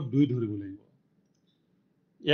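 A man's voice speaking, trailing off within the first second, then near silence.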